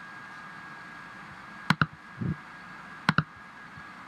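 Computer mouse button clicked twice, each a quick double click of press and release, about a second and a half apart, over a faint steady high whine.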